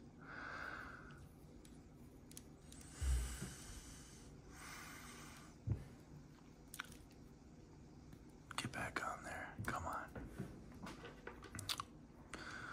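Small plastic clicks and rubbing from hands working the parts of a 6-inch plastic action figure, with a soft thump about three seconds in and a denser run of clicks in the last few seconds.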